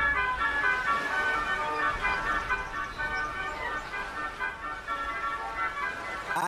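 Instrumental dance-track music: a melody of short, quick high notes, with the deep bass dropping away just after the start.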